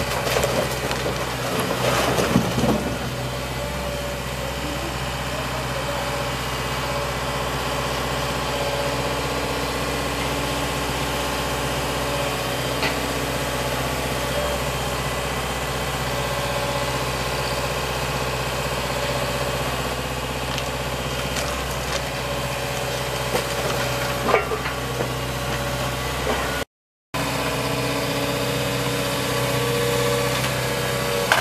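JCB tracked excavator's diesel engine running steadily at a constant pitch, with a cluster of knocks about two seconds in and a sharp knock near 24 seconds as its demolition grab works the masonry. The sound drops out briefly about 27 seconds in.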